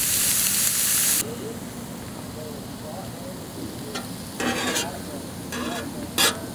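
Seasoned catfish fillets sizzling in oil on a Blackstone flat-top griddle. The sizzle is loud for about the first second, then drops to a quieter hiss. About two-thirds of the way in and again near the end come short scraping sounds as the fillets are pushed and flipped across the steel griddle with scissors.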